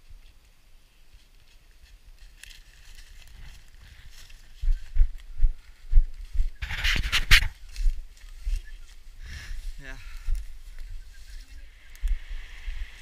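Running footsteps thudding on a dirt trail, with the handheld camera jolting, from about four seconds in. A loud rustling burst comes about seven seconds in, as the runner brushes past branches. Near the end, the rush of a rocky river comes in.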